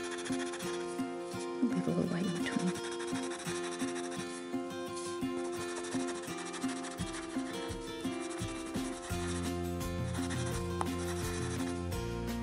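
Watercolor pencil rubbing on cardstock in quick short strokes as it colours in, over soft background music.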